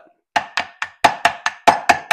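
Rapid hammer taps on a GM SI-series alternator to knock its case apart and free the stator: about eight quick strikes, roughly four a second, each with a brief metallic ring.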